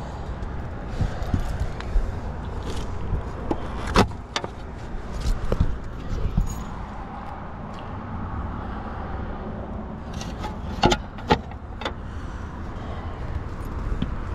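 Outdoor rooftop background of steady low road-traffic and wind rumble, with a few sharp clicks and knocks from handling and movement, a handful a few seconds in and another cluster about eleven seconds in.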